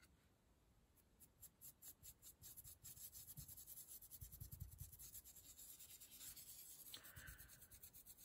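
Faint scratching of a dry paintbrush stroked quickly over a stencil, brushing a little acrylic paint through onto the wipe beneath. It starts about a second in as a quick run of short strokes.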